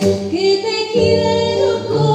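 A woman singing a Sephardic song live into a microphone, her voice moving through a melody over low sustained accompanying tones that change pitch about once a second.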